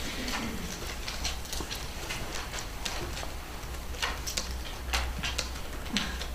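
Irregular small clicks and taps of pens writing on paper ballots on a tabletop, with some paper handling, over a low steady hum.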